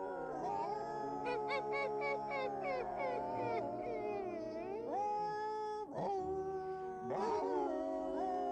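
Several dogs howling together in a drawn-out chorus, holding long wavering notes at different pitches that slide up and down.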